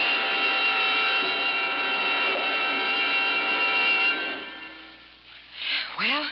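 Radio-drama dynamite blast in a mine tunnel, starting suddenly and loudly with a held dramatic music chord over it. The blast and chord hold for about four seconds, then fade away.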